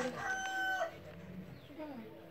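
A rooster crowing: the last part of a long crow, held on one pitch, cuts off sharply just under a second in.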